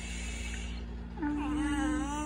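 A baby cooing: one long, drawn-out vowel sound that starts about a second in.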